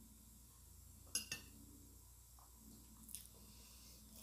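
Near silence: room tone, broken by two short faint clicks about a second in and another faint one near three seconds.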